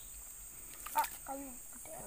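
Steady high-pitched chirring of insects, with a short spoken "ah" and a sharp click about a second in.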